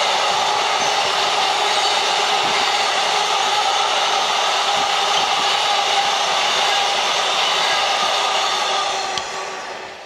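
Container freight train rolling past close by: a loud, steady rush of wheels on rail with several held tones running through it, dying away in the last second or so as the last wagons go by.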